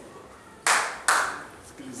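Two sharp hand claps about half a second apart.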